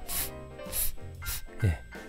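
A man demonstrating the voiceless English 'th' sound [θ], with no voice behind it. He makes three short breathy hisses of air forced between the tongue and the upper teeth, about half a second apart, over soft background music.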